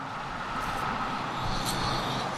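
Road traffic passing on the bridge deck: a steady rush of tyre and engine noise that grows slightly louder.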